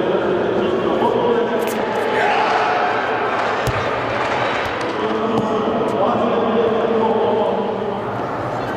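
Many voices talking at once in a large echoing sports hall, with a single dull, low thud a little under four seconds in: a shot landing on the indoor throwing area.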